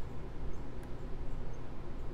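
Steady low hum with a few faint clicks from the scroll button on a DigiTrace 920 heat trace controller's keypad being pressed.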